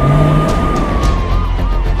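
Film-trailer music: one long held high note that slowly rises and falls, over a steady low rumble. A car is driving through it.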